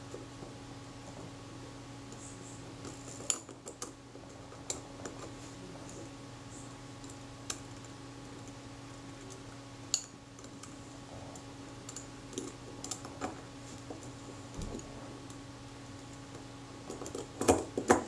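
Sparse, sharp little metallic clicks of steel tweezers against the small steel parts and spring of a camera leaf shutter, as a spring loop is grabbed and turned. Under them runs a steady low hum.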